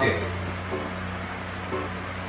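Background music with a steady low bass tone, under faint light ticking and clicking from a rubber ball and small plastic jack pieces on a tile floor, with faint voices.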